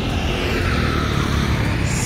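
A vehicle passing on the road: a steady rushing noise with a deep rumble underneath.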